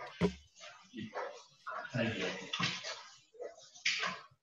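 Quiet, indistinct voice murmuring with a hissy edge, and a short low thump just after the start.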